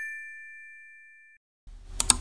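Bell-like ding sound effect ringing out and fading away over about a second and a half. Near the end comes a short swish with a sharp mouse-click effect, the sound of an animated subscribe-button click.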